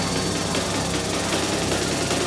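Hard industrial techno playing in a DJ mix: a dense, noisy texture that fills the whole range at a steady level, with no break.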